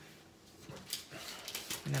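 Faint rustling and sliding of a clear plastic sleeve as paper sticker sheets are slipped back into it, with small scattered handling noises.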